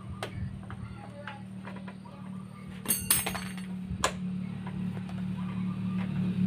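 Hands working the plastic handlebar cover of a Honda Beat scooter: a few sharp clicks and knocks, with a short run of light metallic clinks about three seconds in, over a steady low hum.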